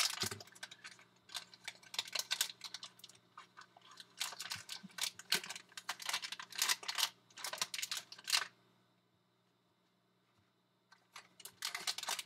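Plastic trading card pack wrapper crinkling as it is torn open and the cards inside are handled, in short bursts of crackling. The crackling stops for about two seconds late on, then starts again as another pack is picked up.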